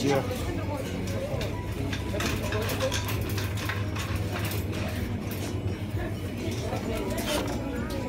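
Supermarket ambience: a steady low rumble under faint, indistinct voices, with scattered light clicks and rattles.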